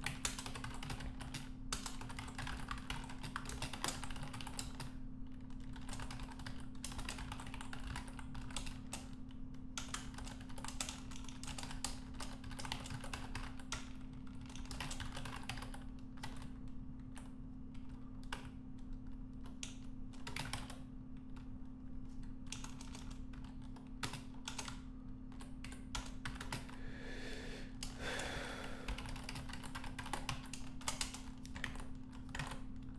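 Typing on a computer keyboard: irregular runs of keystroke clicks with short pauses between words and commands, over a steady low hum.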